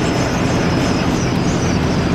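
Converted school bus driving at highway speed: a steady low engine drone under road and wind noise.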